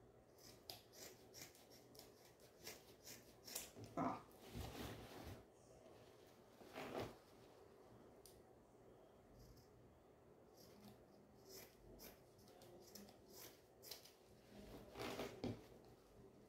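Faint snips of sewing scissors cutting through layered quilted fabric, a scattered run of short clicks, with soft rustling of cloth as the bag is handled.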